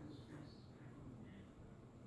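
Near silence, with a few faint, short squeaks of a dry-erase marker writing on a whiteboard.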